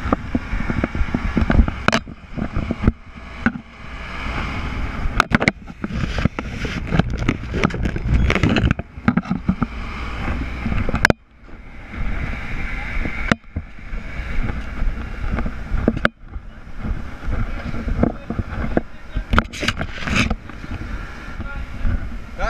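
Handling noise on a body-worn camera as the wearer moves: an irregular low rumble with many clicks and knocks, which drops out suddenly and briefly twice, near the middle and about two-thirds of the way through.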